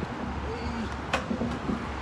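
Faint men's voices over a low steady rumble of outdoor street noise, with one sharp click about a second in.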